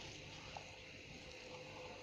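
Quiet room tone with faint handling noise from a hand mixing minced chicken paste in a bowl, and one light click about half a second in.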